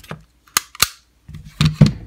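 Sharp metallic clicks from handling a SIG Sauer P225-A1 pistol with an extended magazine: two crisp clicks about half a second in, then two duller knocks near the end.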